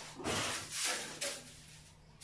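Long-handled broom brushing against a glazed tiled wall in scratchy strokes: a short one at the start, then a longer one lasting over a second.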